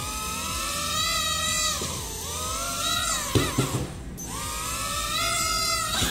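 Sharper Image DX-1 micro drone's tiny propeller motors whining as they are throttled up, the pitch climbing, sagging about two seconds in and dropping off briefly around four seconds in, then climbing again as the drone lifts off. A few light knocks come just past the middle.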